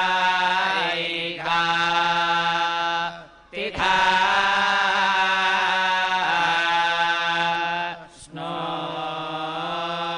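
Male priests' voices chanting Vedic hymns together over microphones in long held recitation tones, with two brief pauses for breath, about three and a half and about eight seconds in.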